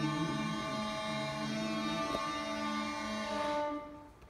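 Violin playing the long held closing notes of a hymn tune, dying away just before the end.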